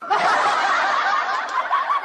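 Laughter from several voices at once, starting abruptly out of silence and running on steadily.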